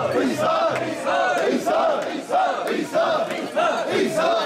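A crowd of mikoshi bearers shouting a rhythmic carrying chant in unison, about two calls a second, while shouldering the portable shrine.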